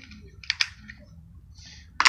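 Two sharp clicks close together about half a second in: the black plastic air filter housing of a small engine being handled and worked loose from the carburetor.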